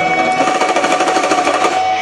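Live rock band sustaining a held chord, with a fast rapid-fire drum roll running under it, typical of a song's closing build.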